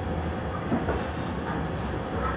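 Steady low rumble of background room noise, with a faint brief voice-like sound near the middle.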